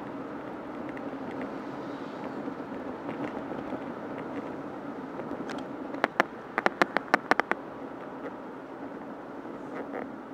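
Steady road and engine noise of a car driving, heard from inside the cabin through a dashboard camera. About six seconds in comes a quick cluster of about eight sharp clicks or rattles over a second and a half.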